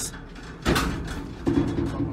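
Two sudden bangs, the first less than a second in and the second near the end.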